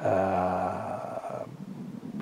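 A man's drawn-out hesitation sound held at one steady pitch, fading slightly over about a second and a half before a short pause.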